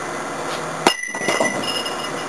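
A thrown object strikes a glass bottle held under vacuum about a second in: one sharp clink, then a short high glass ring that fades out. The bottle does not implode.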